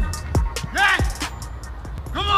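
Background music with a drum beat, a sharp hit near the start and a short pitched sound that rises and falls about a second in.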